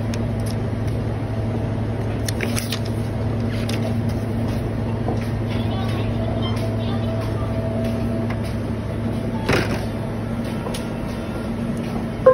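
Steady low machine hum with a few light clicks and paper rustles as a sheet of paper is laid on a copier's document glass; a sharper click comes about nine and a half seconds in.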